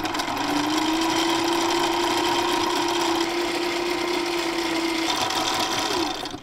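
Sailrite walking-foot sewing machine running at a steady speed, stitching through thin cotton. Its motor hum holds one steady tone, then dies away near the end as the machine stops.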